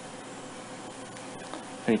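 Faint, steady background hum with a thin constant tone, then a man starts speaking at the very end.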